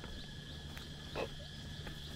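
Tropical forest ambience: a steady high insect drone, with a few short footstep-like sounds on a dirt path and a louder short sound a little past a second in.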